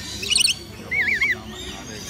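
Birds calling: a quick burst of high chirps, then a wavering, warbling whistle about a second in.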